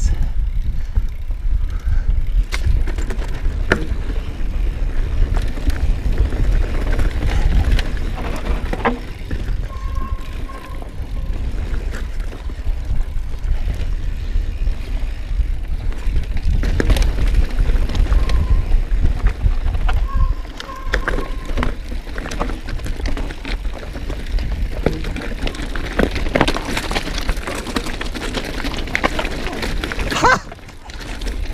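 Orbea Rallon full-suspension mountain bike ridden downhill over dirt singletrack and loose rocks: a continuous low rumble of tyres over the ground, with frequent rattles and knocks from the bike. Brief high squeaks come twice near the middle.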